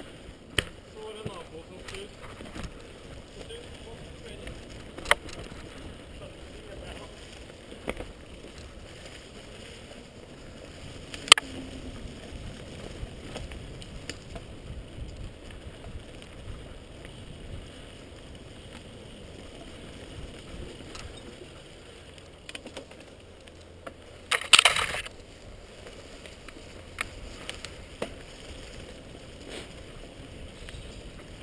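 Mountain bike ridden fast down a forest singletrack: a steady rumble of knobby tyres rolling over dirt and roots, with sharp knocks and clatters from the bike as it hits bumps. The loudest is a short rattle about five seconds before the end.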